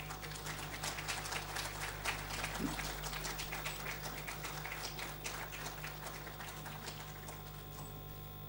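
Light applause from a small audience, thinning out and stopping near the end.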